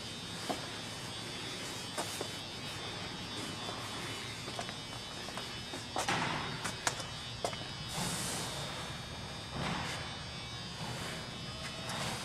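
Faint steady buzzing hum, with a few light clicks and knocks scattered through it.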